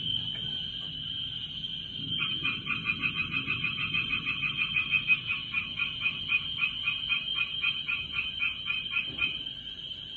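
An animal calling in a rapid train of short, even pulses, about four a second, starting about two seconds in and lasting about seven seconds, over a steady high whine.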